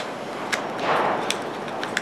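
Handling sounds from a Ruger LCP pistol being field-stripped: a few light clicks and a short soft scuff as the freed takedown pin is set down on the wooden table and the pistol is worked in the hands.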